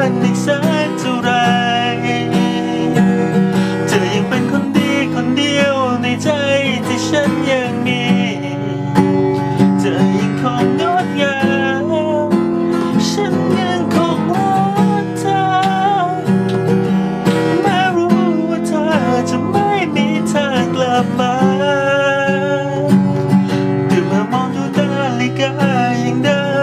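A man singing a slow ballad while strumming chords on a steel-string acoustic guitar, his voice carrying the melody throughout over the steady strumming.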